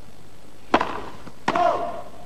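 A tennis racket strikes the ball on a first serve, a single sharp hit about three-quarters of a second in. About a second later comes a brief shouted call, the line call that the serve is a fault.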